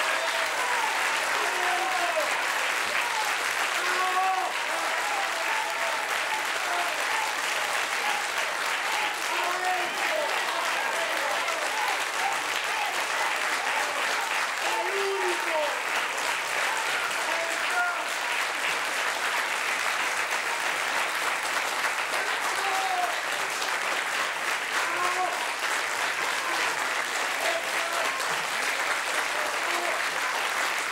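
Studio audience applauding without a break, a long standing ovation, with scattered voices calling out from the crowd.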